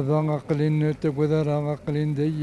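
A man's voice speaking in short, fairly even-pitched phrases with brief breaks between them.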